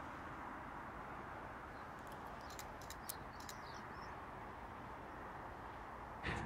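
Faint outdoor ambience: a steady low hiss, with a few faint, high bird chirps and ticks between about two and three and a half seconds in.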